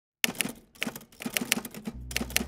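Typewriter keystroke sound effect: an irregular run of sharp key clacks, about a dozen, starting about a quarter second in, timed to title letters typing out.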